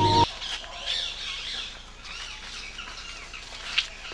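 Birds chirping and calling over a quiet outdoor background. A steady hum cuts off abruptly just after the start, and a single sharp click comes near the end.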